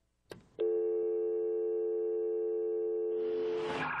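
A click on the phone line, then a steady telephone tone as the call goes dead after the caller hangs up. Near the end a rush of noise rises over it.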